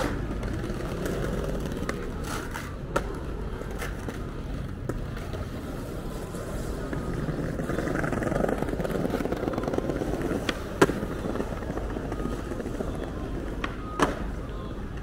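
Busy pedestrian street ambience: a steady low rumble with a few sharp clicks, the loudest about three-quarters of the way through.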